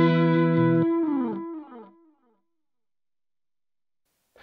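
LTD SN-1000W electric guitar played through a Blackstar ID:Core Stereo 150 combo amp. A held chord is cut off just under a second in, followed by a few fading notes that slide down in pitch.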